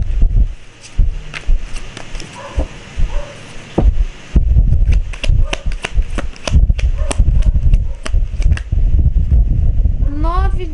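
A deck of tarot cards being shuffled and handled by hand, quieter at first, then a fast run of sharp card flicks and taps from about four seconds in, with dull knocks on the cloth-covered table.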